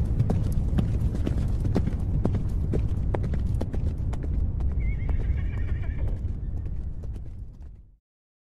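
Irregular knocks, roughly two or three a second, over a low rumble, with a short wavering high cry about five seconds in; the sound fades out just before the end.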